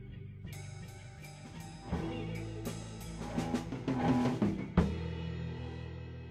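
Rock band playing: drums with regular cymbal strokes over held bass and guitar tones, then a rapid drum fill ending in one loud crash, after which the chord rings on.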